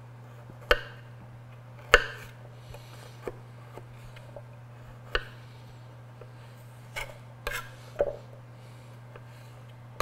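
Kitchen knife peeling a fresh ginger root on a wooden cutting board: irregular sharp taps as the blade shaves off the skin and meets the board, about seven in all, over a steady low hum.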